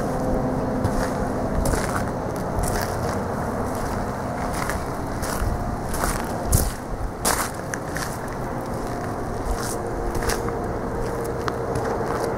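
Deutz F8L413 air-cooled V8 diesel of a Wagner ST3.5 Scooptram loader idling steadily, with scattered crunching and clicking steps close by, the loudest about six and a half seconds in.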